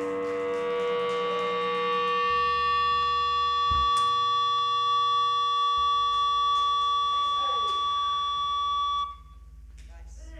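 Several steady electric tones from the stage amplification ring on after the song, the strongest a high held tone over a low hum, then cut off suddenly about nine seconds in. Voices talk faintly near the end.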